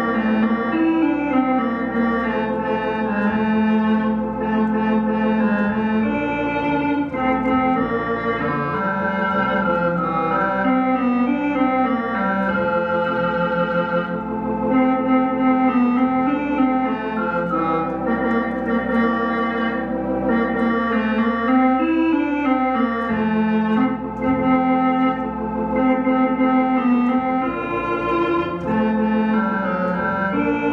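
Elka X19T electronic organ playing a hymn in F major: sustained, held chords changing every second or two, with no breaks.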